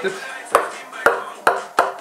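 A table tennis ball dropped onto a thin wooden table-top panel, bouncing four times with the bounces coming quicker and quicker. On these 5 mm plates the bounce dies quickly ("verreckt der Ball"), because the plates are too thin.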